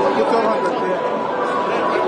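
Many people talking at once: a steady chatter of overlapping voices with no single speaker standing out.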